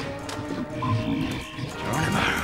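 Dramatic orchestral score with sustained notes, over a low creature growl.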